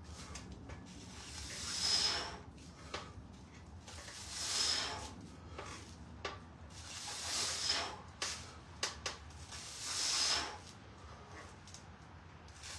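A person breathing hard while bench-pressing a barbell: one forceful, hissing breath about every two and a half to three seconds, in time with the reps. A few light clicks come around the middle.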